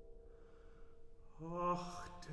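Classical art song for tenor and piano, in a quiet pause: a held piano note dies away, then a male voice enters with a sung note about one and a half seconds in.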